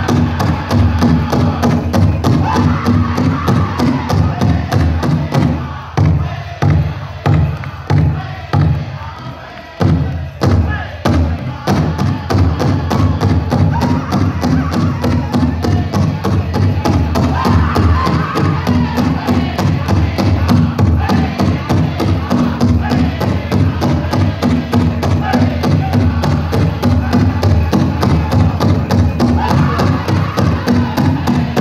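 Powwow drum group singing a fancy dance song over a fast, steady drumbeat. About six seconds in, the drumming changes to single hard strikes for a few seconds before the full song starts up again.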